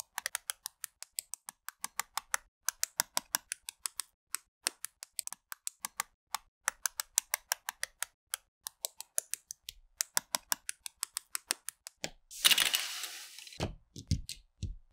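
LEGO bricks being pressed together by hand: a rapid run of sharp plastic clicks, several a second. About twelve seconds in, a loud burst of hissing, rustling noise lasts over a second.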